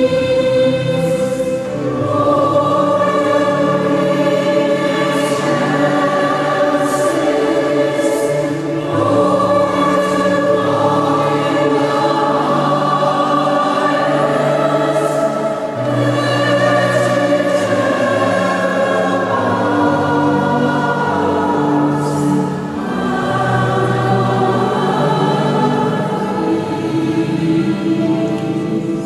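Mixed choir of men and women singing in parts, holding sustained chords that change every few seconds.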